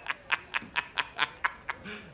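A man laughing hard in a rapid string of short 'ha' bursts, about four or five a second.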